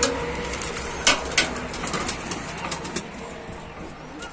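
A rusty metal coop door unlatched and swung open: a few sharp metal clicks and knocks in the first second and a half. Birds inside the coop coo softly throughout.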